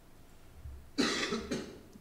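A person coughing: a sharp cough about a second in, then a smaller second cough.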